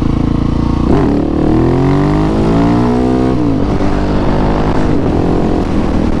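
Husqvarna 701 Supermoto's big single-cylinder engine running under way, rising in pitch as it accelerates from about a second in, then falling away a little past the middle and settling at a steadier, lower note.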